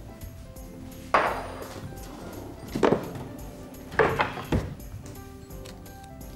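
Background music under a few sharp knocks and clinks of kitchen things handled on a counter: one about a second in, one near three seconds, and a quick cluster around four seconds.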